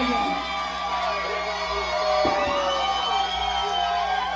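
Crowd cheering, whooping and shouting at the end of a live band's set. A long held tone rings over the voices from about halfway through.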